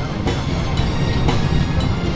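Steady low rumble of an airliner cabin, with a faint beat of music about twice a second over it.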